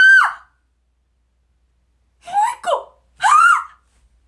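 A young woman's high-pitched excited squeals: one loud squeal at the start, two short cries a little past the middle, then another loud rising-and-falling squeal near the end.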